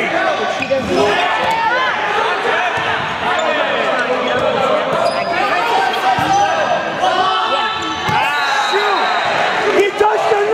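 Indoor volleyball rally: the ball being struck a few times, with sharp hits, over steady chatter of many voices in a large, echoing gym.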